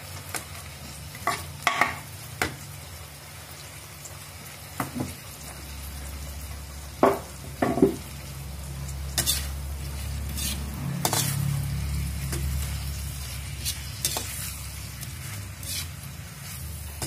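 Shrimp and sliced onion sizzling in an enamel wok while a metal spatula stirs them, scraping and clinking against the wok at irregular intervals. A low steady hum comes in about five seconds in.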